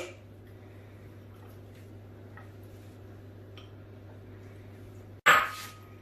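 Quiet kitchen room tone with a steady low hum and a few faint, soft taps as chickpeas are set by hand onto rice in a clay cazuela. Near the end a sudden louder burst of sound breaks in.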